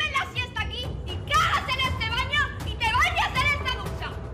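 Several women's high-pitched voices shrieking and exclaiming excitedly over one another, with no clear words.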